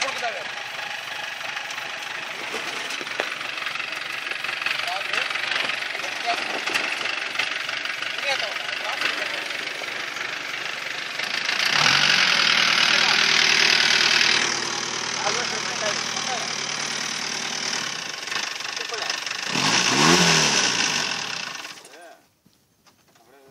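Modified open-top Jeep's engine running as it drives over loose dirt. It is loudest for a few seconds about halfway through as it passes close by, and its pitch rises and falls briefly near the end.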